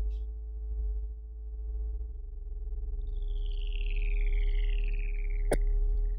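Synthesized magic sound effect over a steady low drone of held notes: a cluster of falling whistling sweeps in the second half, cut off by a single sharp click about five and a half seconds in.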